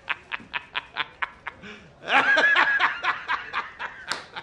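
A man laughing hard in a rapid run of short bursts, about five a second, rising to a louder, high-pitched stretch of laughter a little after the middle.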